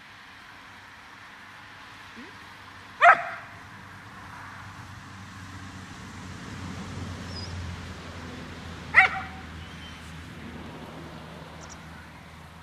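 A spaniel barking sharply twice while heeling, once about three seconds in and again about six seconds later. This is excited vocalising during obedience work, the noise the handler is training the dog to stop.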